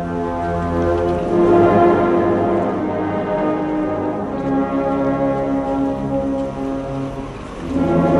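Slow, mournful brass band funeral music with long held notes, dipping briefly in volume near the end.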